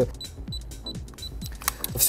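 Background music under a pause in the talk, with a run of short high electronic beeps and light clicks.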